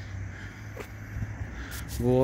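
Low, steady outdoor background rumble, with one faint click a little under a second in.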